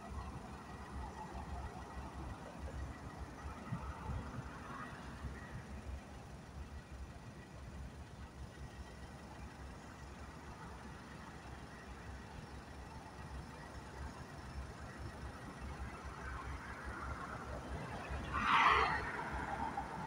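A freight train of gondola cars making switching moves gives a low, steady rumble. A short, louder rushing noise comes near the end.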